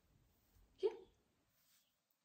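A quiet room with a single short spoken word, a woman's "ja", a little under a second in; otherwise only faint room tone.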